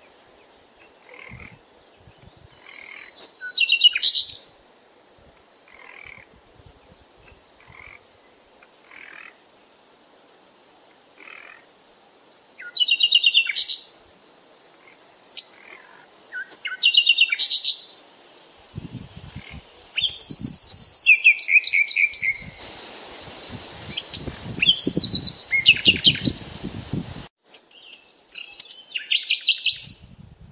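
Birds chirping in short, loud, high trilled phrases every few seconds, over softer repeated calls and frog croaking, in the second half joined by a hissy stretch that cuts off suddenly.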